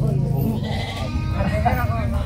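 A goat bleating in a wavering voice, with people talking in the background.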